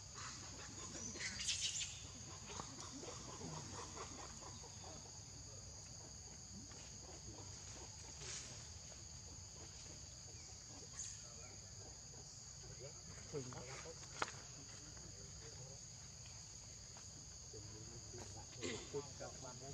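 Faint steady insect chorus, two unbroken high-pitched trills, with a few brief faint sounds and one sharp click about 14 seconds in.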